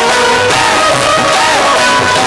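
Live devotional bhajan band playing an instrumental passage: a melody instrument running ornamented, wavering phrases over the accompaniment.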